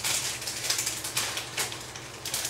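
Sheets of printed paper being handled: irregular rustling with light clicks.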